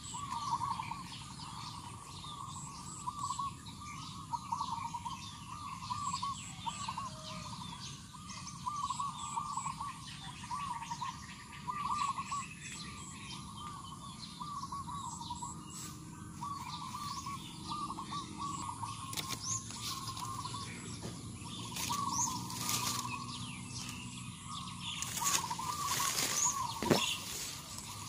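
Birds chirping over and over, short wavering calls with faint high pips among them, and a few knocks and rustles near the end.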